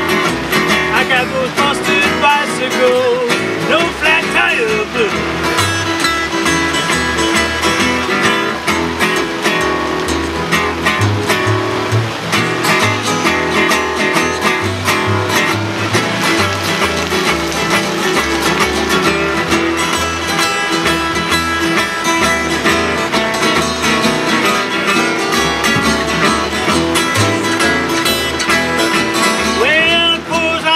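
Instrumental break of an acoustic blues jam: three acoustic guitars strumming and picking over an upright bass that plucks a stepping bass line, a new bass note about every half second.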